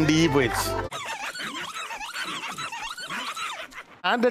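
A song with a sung voice over a low drone cuts off about a second in, and a quieter, high-pitched squeal follows, its pitch wavering rapidly up and down.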